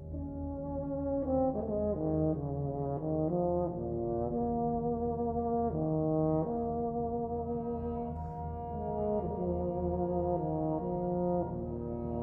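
Euphonium soloist and brass band playing a slow, lyrical passage: held notes that change about once a second over a sustained low bass.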